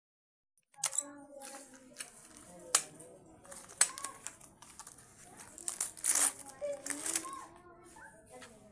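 Sharp clicks and taps of a plastic syringe and glass ampoule being handled on a wooden table, then a crinkling rustle of the syringe's plastic wrapper about six seconds in.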